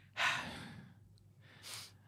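A man's breathy, sigh-like exhale, about half a second long and fading, followed by a shorter breath near the end.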